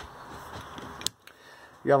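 Quiet room tone with a single sharp click about a second in; a man starts speaking near the end.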